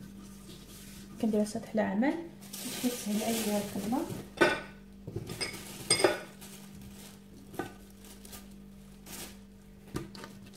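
Kitchen handling sounds: a hand rubbing oil across a smooth worktop, with a few sharp clinks of a dish or utensil, about four and a half, six and seven and a half seconds in.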